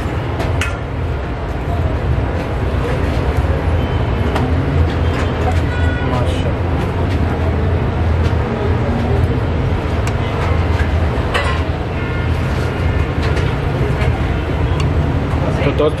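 Steady low rumbling background noise with indistinct voices, and a few short metallic clinks as a steel ladle serves bean curry from an aluminium pot into a steel plate.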